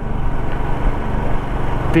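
Royal Enfield Himalayan's single-cylinder engine running steadily while riding, heard from the rider's seat along with steady wind and road rush.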